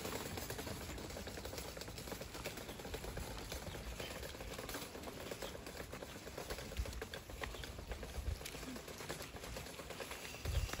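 Small wheels of a wire shopping trolley rattling over paving stones, a faint, rapid, continuous clatter.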